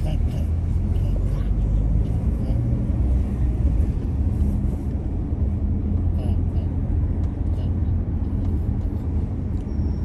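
Car driving along a town street: a steady low rumble of engine and tyre noise.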